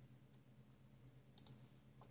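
Near silence: room tone with a faint steady low hum and two faint clicks about one and a half seconds in.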